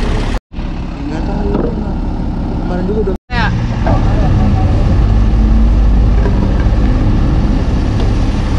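Heavy diesel engine of a rough-terrain crane running steadily, getting louder and deeper about four seconds in. Crew voices are heard over it.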